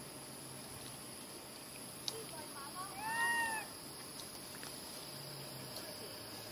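A macaque gives one clear, arched coo call about three seconds in, a pitched call that rises and falls, with a few faint squeaks just before it. Under it runs a steady high-pitched insect drone.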